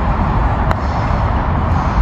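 A putter strikes a golf ball once, giving a single short sharp click, over a steady low rumble.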